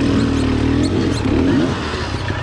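Beta Xtrainer two-stroke dirt bike engine running at low, part-throttle revs on trail. Its note is steady at first, then wavers up and down with the throttle in the second half. A few short, high chirps sound above it.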